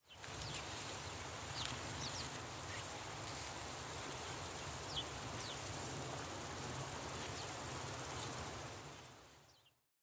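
Outdoor ambience: birds giving short, high, downward-slurred chirps every second or two over a steady hiss and low rumble, fading out at the end.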